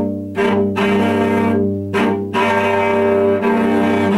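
Cello improvisation played with the bow: long sustained notes over a held low note, with a new bow stroke and note change about a third of a second in and again around two seconds in.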